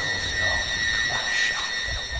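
Recreated sound effect of a Time Lord fob watch: a steady high ringing tone with faint, breathy swells rising and falling beneath it.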